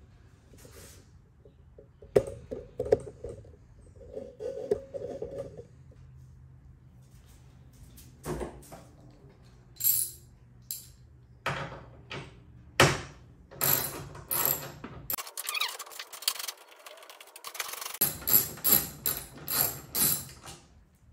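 Ratchet and socket working the tail-light mounting bolts out: scattered sharp metal clicks and clinks, with a quicker run of ratchet clicks near the end.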